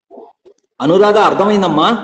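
A loud human voice, its pitch swinging up and down, for about a second from just before the middle, after a few faint short voice sounds.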